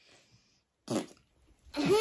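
A short spluttering raspberry blown with the tongue out, one quick burst about a second in after a faint breathy puff, with a voice starting up near the end.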